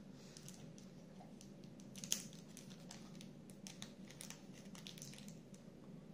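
A small clear plastic bag of model screws crinkling and rustling as fingers handle it, with scattered light clicks of small parts and one sharper click about two seconds in.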